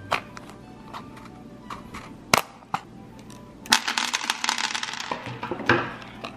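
Cardboard display card of a beaded bracelet being handled: a few scattered clicks, then about two seconds of dense crinkling and tearing as the bracelet is pulled off the card.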